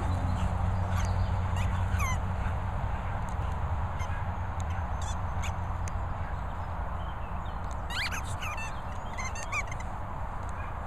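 Small dogs at play with a rubber ball: a few short, high squeaks, one about two seconds in and a cluster around eight seconds, over a steady low rumble.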